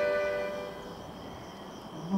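Piano accordion holding a sustained chord that fades away in the first second, followed by a brief quiet pause.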